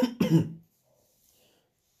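A man coughing, two short coughs into his fist in the first half second.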